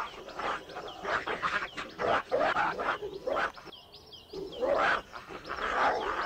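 Two dogs fighting, growling and snarling in rough, irregular bursts, with a brief lull about four seconds in.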